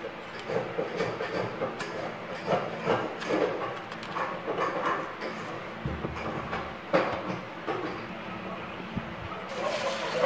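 Knife cutting and scraping the calyx off a round green eggplant (cà bát) on a wooden cutting board: a run of short, irregular scrapes and taps, with a sharper knock about seven seconds in.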